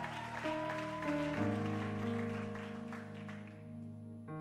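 Soft background music of sustained instrumental chords that change about a second and a half in.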